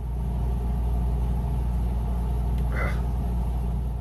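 A steady low rumble, like an engine, played as a livestream donation alert sound effect, cutting in and out sharply, with a short hiss about three quarters of the way through.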